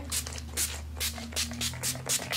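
Pump-mist bottle of Mario Badescu rose facial spray spritzed at the face about six times in quick succession, each spritz a short hiss.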